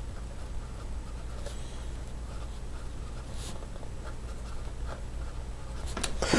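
Fountain pen's medium steel nib writing on Rhodia pad paper: faint scratching of short pen strokes.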